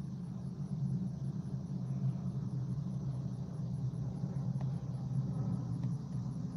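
Steady low hum inside the cabin of a stationary car with its engine idling.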